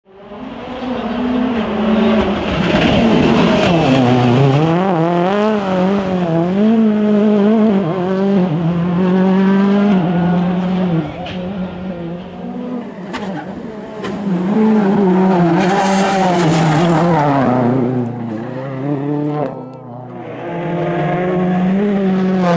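A Ford Fiesta RS WRC rally car's turbocharged four-cylinder engine at full attack, revving up and falling back again and again through gear changes, with a few sharp cracks around the middle. The sound fades in over the first two seconds.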